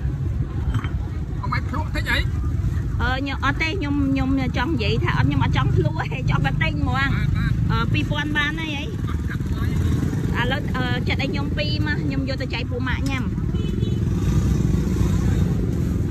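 People talking in a busy market over a steady low rumble.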